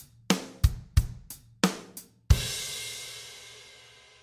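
Drum kit playing a simple bass-drum and snare beat with hi-hat, about three strokes a second. A little over two seconds in it ends on one loud hit with a cymbal that rings on and slowly fades away.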